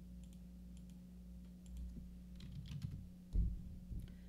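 Computer keyboard keys being typed: a scattered run of faint clicks, quickening past the middle, with a heavier low thump a little over three seconds in, over a steady low hum.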